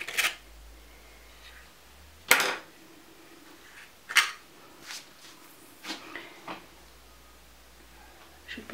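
About half a dozen separate sharp clicks and light knocks, the loudest about two and four seconds in: a paper cup liner and tools being handled and set down in a metal muffin tin.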